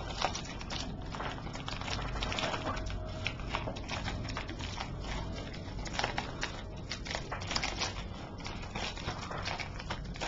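A white plastic shipping mailer handled and opened by hand: continuous crinkling and rustling with scattered small clicks and crackles.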